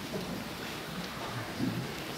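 Indistinct low murmur of voices in a hall over a steady background rumble of room noise.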